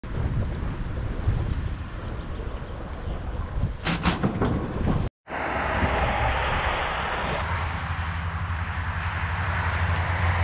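Wind rushing over the microphone of a camera riding on a bicycle, with the rumble of tyres on an asphalt cycle path. There are a few sharp rattles just before four and a half seconds, and a brief dropout about five seconds in, after which the noise runs steadier.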